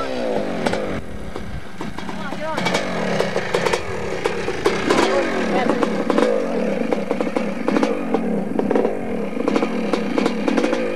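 Yamaha YZ250 two-stroke dirt bike engine running, its pitch rising and falling as it is revved, with some sharp knocks over it.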